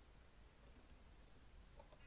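Near silence: room tone with a few faint clicks, about a second in and again near the end, typical of a computer keyboard or mouse.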